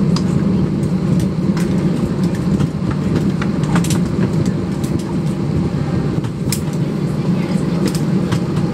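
Steady low rumble of an airliner cabin before takeoff, with a few faint clicks scattered through it.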